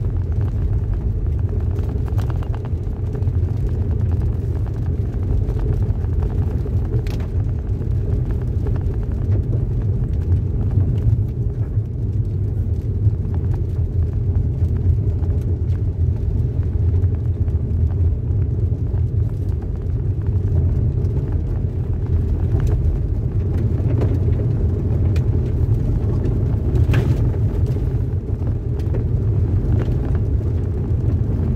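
Steady low rumble of a car driving on a wet dirt road, heard from inside the cabin: tyre and engine noise, with a couple of faint ticks.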